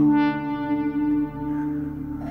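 Eurorack modular synthesizer music: sustained low drone tones hold steady while a brighter tone, rich in overtones, comes in at the start and fades out about a second and a half in.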